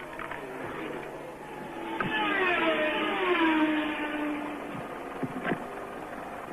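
Formula One racing engines passing a trackside microphone at speed, the loudest car's note falling steeply in pitch about two seconds in as it goes by.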